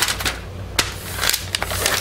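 Paper mold liner rustling and crinkling as hands smooth and crease it flat, in a string of short, uneven crackles.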